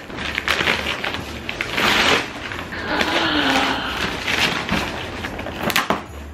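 Cardboard shipping box being opened by hand: packing tape peeling and tearing, and cardboard flaps scraping and rustling, with a sharp snap near the end.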